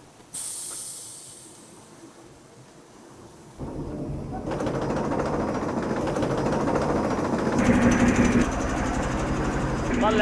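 Industrial carpet-drying machine: a brief hiss just as its lever is worked, then a few seconds later the machine starts up and runs with a dense mechanical clatter that builds in loudness, a steady hum joining about two seconds before the end.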